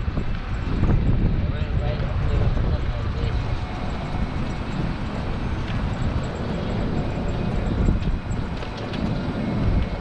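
Low, steady rumble of wind on the microphone and tyre and road noise from a moving golf cart.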